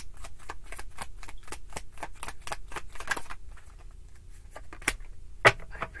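Tarot deck being shuffled by hand: a quick, even run of card clicks, about five a second, thinning out in the last seconds, with two sharper snaps near the end.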